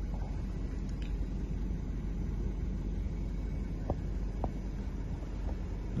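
Steady low rumble inside a car's cabin, with a few faint clicks about a second in and again past the middle.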